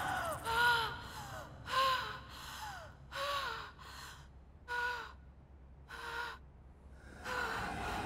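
A terrified woman gasping: short, voiced, whimpering breaths about once a second, each falling in pitch, growing fainter through the middle.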